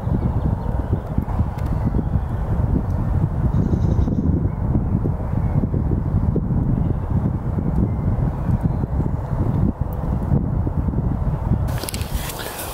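Continuous low rumble that flutters in loudness: wind buffeting the microphone.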